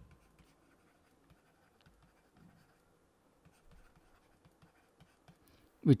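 Faint scratching and light taps of a stylus writing handwritten words on a pen tablet.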